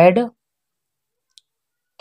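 A man's voice says one short word at the start, then near silence broken only by a single faint tick about a second and a half in.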